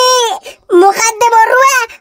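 A high-pitched cartoon voice crying: a short held wail at the start, then after a brief break a longer stretch of wavering, sobbing wails.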